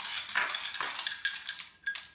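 Ice cubes tipped from a glass cup into a glass bowl of fruit, clinking and rattling against the glass in several short strokes.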